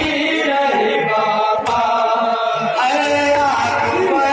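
Several men chanting a noha, a Shia mourning lament, into a microphone. A sharp slap of chest-beating (matam) comes about a second and a half in.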